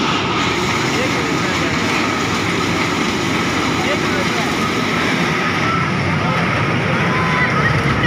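Small amusement-park train ride running on its elevated steel track, a steady loud rumble, with faint children's voices over it.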